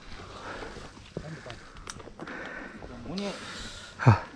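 Faint, indistinct talk among a group of people over steady outdoor background noise, with a few light clicks.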